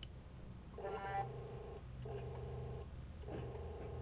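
Apple IIGS 3.5-inch floppy drive reading the archive disk during a ShrinkIt extraction: four pitched, buzzing runs of about a second each with short breaks between them, over a steady low hum.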